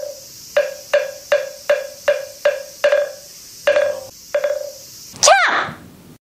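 Edited-in sound effects: a short, hollow wood-block knock repeated evenly about two and a half times a second, ten knocks, a brief gap, then two more. Near the end comes one quick swooping tone.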